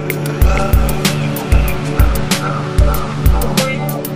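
Electronic chill-out music with a steady kick-drum beat, about two hits a second, over deep bass and sustained synth layers, with short sliding tones on top.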